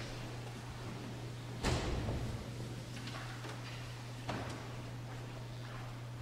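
A heavy wooden thump a little under two seconds in and a shorter knock a couple of seconds later, with a few light clicks: pews and the altar-rail kneeler being bumped as people move about the church. A steady low hum runs underneath.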